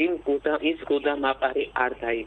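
Speech: a person talking without a pause.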